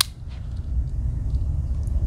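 Wenger Skier Swiss Army knife tool snapping shut on its backspring: one sharp metallic click at the start, followed by a low steady rumble.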